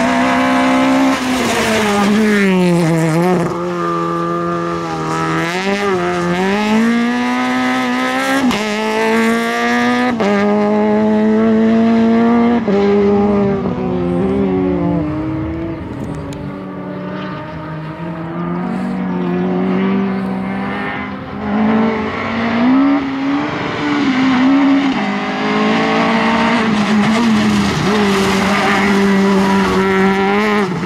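Peugeot 208 R2 rally car's 1.6-litre four-cylinder engine being driven hard, its pitch repeatedly climbing and then dropping sharply at gear changes and lifts. It fades somewhat in the middle as the car moves farther off, then comes back.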